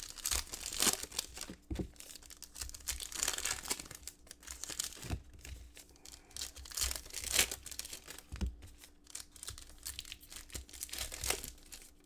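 Plastic trading-card pack wrappers crinkling and tearing open in irregular bursts as cards are pulled out and handled.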